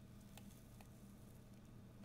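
Near silence: room tone with a faint low hum and two faint ticks in the first second.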